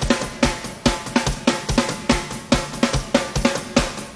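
Rock drum kit played live in a steady groove: bass drum, snare and cymbal strokes, about three strong hits a second.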